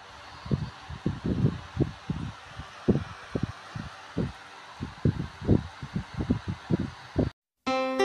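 Irregular, muffled low thumps and bumps over a steady hiss: handling noise from the open cardboard box and the recording phone. It cuts off shortly before the end, and after a brief gap music starts.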